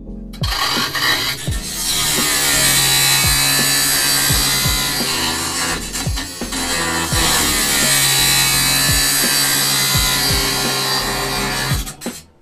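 Angle grinder grinding metal, a loud continuous hiss-like grinding that starts about half a second in, dips briefly about halfway and cuts off sharply at the end, mixed over music with a bass drum beat.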